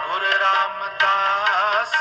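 Sikh gurbani kirtan: a male ragi singing the shabad in an ornamented, wavering line over a steady harmonium and tabla strokes.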